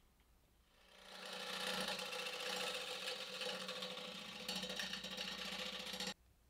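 Wood lathe running: a motor hum and whine that swells in over about a second, runs steadily with a rough, scratchy edge, then stops abruptly at the end.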